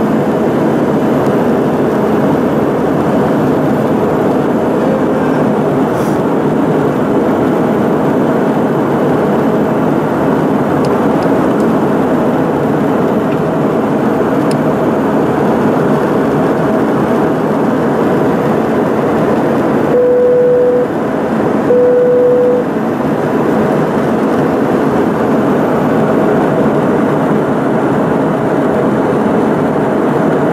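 Steady, loud rush and rumble of a jet airliner's engines and airflow, heard from inside the passenger cabin. About twenty seconds in, two short steady tones of the same pitch sound about a second apart.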